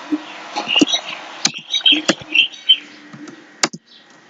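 Computer keyboard being typed on, irregular keystrokes with a few louder sharp clicks.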